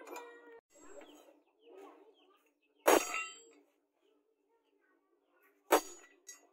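Two sharp metallic strikes about three seconds apart, each ringing briefly: a hammer tapping a small steel punch to engrave patterns into a forged steel knife blade. Softer clinks and scrapes of the tool against the blade come before them.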